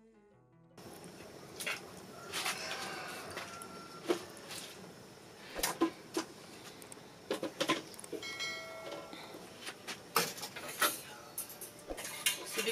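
Guitar music ends within the first second; then irregular knocks and clatters as firewood and a wire mesh are handled over a small wood cooking fire. A short animal call comes about eight seconds in.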